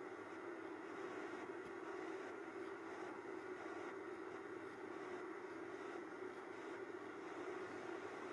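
Steady low hum over a faint background hiss, unchanging throughout, with no distinct knocks or animal sounds standing out.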